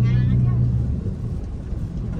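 Busy street-market background: a low hum, loudest in the first second and then easing into a steady rumble, with people's voices.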